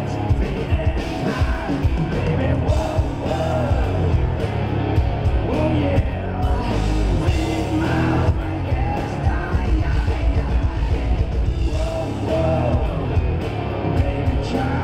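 A live hard rock band plays with a male lead singer belting into the microphone over it.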